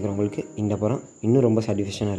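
A man speaking in short phrases, with a steady high-pitched whine underneath.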